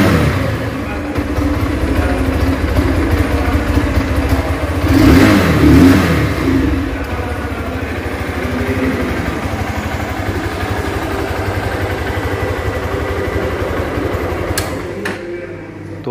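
Hero Xtreme 200S's single-cylinder four-stroke engine idling in neutral, blipped up with the throttle twice (at the start and again about five seconds in), each time falling back to a steady idle. The engine sound stops about a second before the end.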